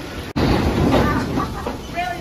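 A wooden roller coaster train rolling into the loading station, its wheels clattering on the track. The sound breaks off sharply about a third of a second in, then resumes as dense rumbling.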